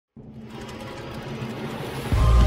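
Sound effect of an animated logo intro: a buzzing, noisy swell that starts abruptly and grows steadily louder, building up toward the intro music.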